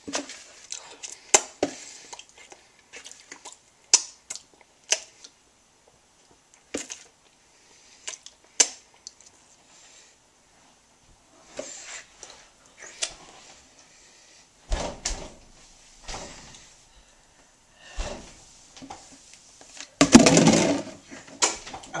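Wet mouth sounds, scattered sparse clicks and lip smacks, from someone licking chocolate off his lips. A few soft low thuds come in the second half, and a louder noisy burst comes about two seconds before the end.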